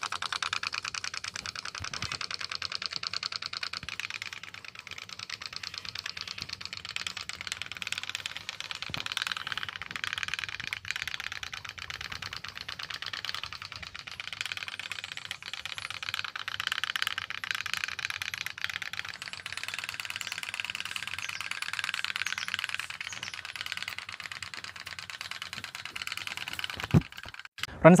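Candle-heated pop-pop steam boat made from a Coca-Cola can, running on the water with a fast, steady rattling putter from its steam pulses; it stops near the end.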